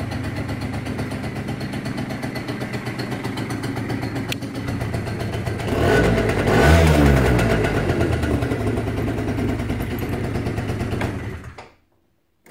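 Sachs Speedjet RS 50 scooter's 50cc two-stroke engine idling, revved once about six seconds in and settling back to idle, then falling silent just before the end.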